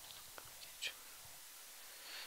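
Near silence in a quiet room, broken by a few faint, brief whispers, the clearest a little under a second in.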